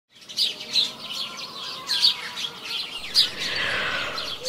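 Small birds chirping: short, sharp high chirps about every second, some louder than others.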